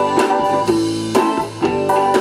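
A live rock band playing: electric guitar and bass guitar over a drum kit, with a steady beat of drum and cymbal hits.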